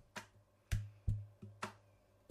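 Four soft clicks or taps, each with a short low thud, about two a second, from handling the studio desk gear just before an instrumental track starts.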